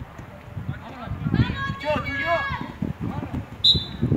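Players calling and shouting across a football pitch, then a short, sharp whistle blast near the end, typical of a referee's whistle stopping play.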